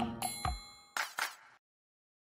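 End of a short logo-intro music sting: a bright chime rings out about a quarter second in, followed by two short hits around one second, and the whole thing fades out within about a second and a half.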